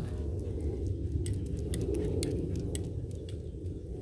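Breeze rumbling steadily on the microphone, with a scatter of faint, light high-pitched clicks and jingles about a second to three seconds in.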